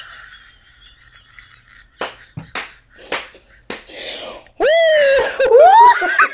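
Two women laughing hard: short breathy bursts and a few sharp smacks, then, about three-quarters of the way in, a loud, high-pitched laugh that swoops up and down in pitch.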